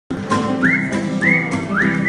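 Acoustic guitar strummed in a steady rhythm while someone whistles along, three whistled notes each swooping upward and then holding, about half a second apart.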